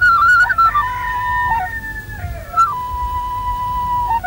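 Background music: a flute playing a slow melody of held notes that step and slide between pitches, settling on a long steady note in the second half.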